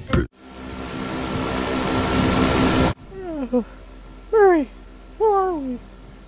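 An aeroplane sound effect: a rushing engine drone swells for about two and a half seconds and cuts off abruptly. It is followed by three short groans, each falling in pitch, from a character waking up, over a low aircraft cabin hum.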